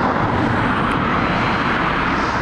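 Steady, loud rushing noise with no distinct events: outdoor ambient sound recorded with the field footage.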